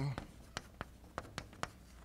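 Chalk writing on a blackboard: a string of sharp chalk taps and short strokes, several a second.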